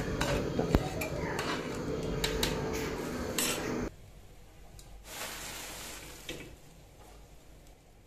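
Slotted metal spoon stirring and scraping cooked rice in a metal pot, with clinks of spoon on pot. The stirring stops about four seconds in, leaving a fainter hiss and a single soft clink. The pulao is being mixed before it is covered to steam through.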